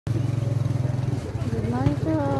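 A vehicle engine idling close by, a steady low pulsing drone, with a voice saying "ano" near the end.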